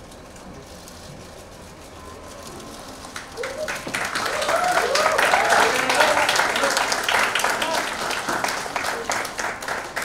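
Audience applause that swells up about three seconds in, with voices calling out over the clapping, then eases off a little near the end.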